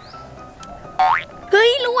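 A cartoon 'boing' sound effect, a short pitched sweep rising steeply, about a second in, over soft background music.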